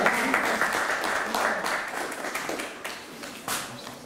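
Small audience applauding, the clapping thinning out and dying away over the last second or two.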